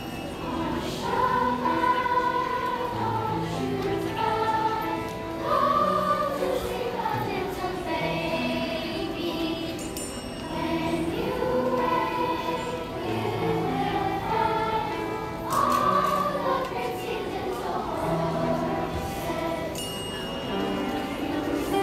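Children's choir singing in long phrases, with instrumental accompaniment of sustained low notes beneath the voices.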